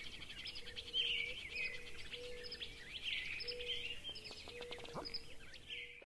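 Small birds chirping: short calls repeated over and over, with a faint steady low hum in broken stretches beneath them.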